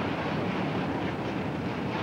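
Steady, even outdoor background noise picked up by a camcorder microphone, with no distinct events.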